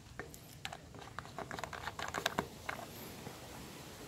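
A flurry of light plastic and metal clicks and taps as the fuel tank's filler cap is handled and put back on, falling off after about three seconds into a faint steady hum.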